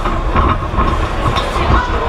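Amateur boxing bout in a hall: shouting from the crowd and corners over a run of dull thuds from footwork on the ring canvas and gloved punches.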